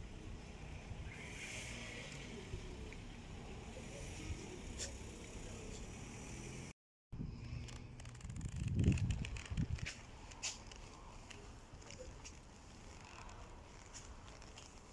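Outdoor street ambience: a steady low rumble of distant traffic with faint scattered clicks. It drops out briefly about seven seconds in, and a short, louder low rumble comes around nine seconds.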